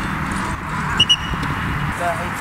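Outdoor football training: a football being passed and kicked on a grass pitch over steady background noise, with two short high-pitched peeps about a second in.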